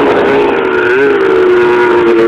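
Polaris snowmobile engine running at speed as the sled rides across the snow, a loud steady drone that rises slightly in pitch about a second in and then eases down.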